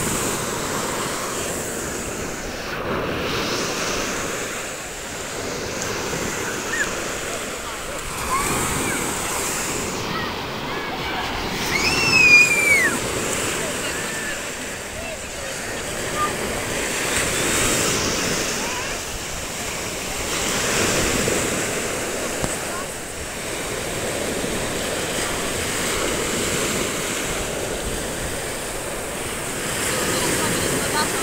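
Sea surf breaking and washing up a sandy beach, the rushing noise swelling and falling back every few seconds. Voices are in the background, and a brief high squeal comes about twelve seconds in.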